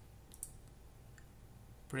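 Computer mouse button clicked once, softly, about half a second in, over faint room hiss: selecting a chart style in Excel.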